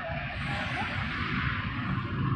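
Steady outdoor background noise with a low rumble underneath.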